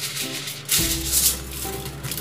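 Thin aluminium foil crinkling and rustling as sheets are spread and smoothed flat by hand, with a burst at the start and another just under a second in, over steady background music.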